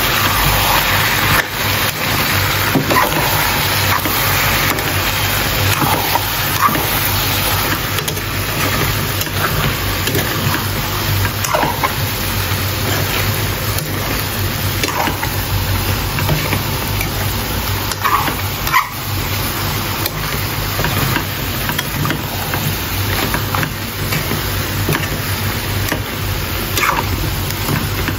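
Mutton and bottle-gourd curry cooking in a wok over a gas flame: a steady, loud hiss and rumble, with a few short scrapes of a steel spoon against the pan.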